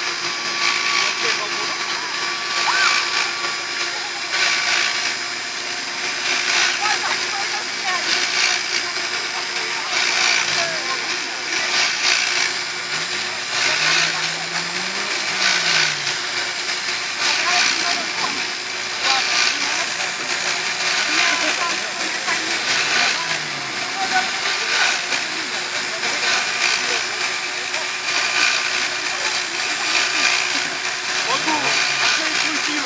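A motor whirring steadily, with people talking in the background.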